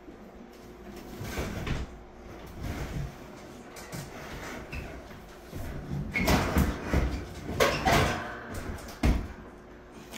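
Sheet-metal air handler cabinet knocking and scraping against the frame of a ceiling attic hatch as it is pushed up into the attic. The knocks and scrapes come irregularly and are loudest about six to eight seconds in, with another sharp knock near nine seconds.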